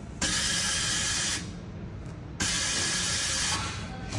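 Air permeability tester's injector-cleaning cycle: air rushing through the test nozzle in two steady hissing bursts of about a second each, with a quieter gap of about a second between them.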